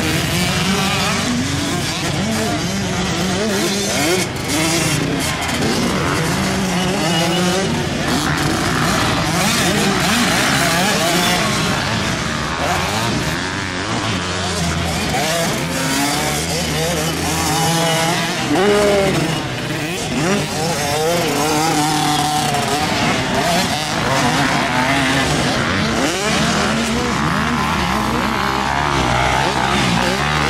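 Motocross dirt bike engines revving hard and backing off as the bikes race around the track. The pitch climbs and drops again and again, with several engines overlapping.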